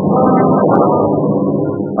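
Radio-drama sound effect of an aircraft in flight: a steady engine drone that eases off slightly toward the end.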